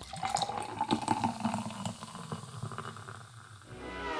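Water running and splashing, with many small splatters and drips through it.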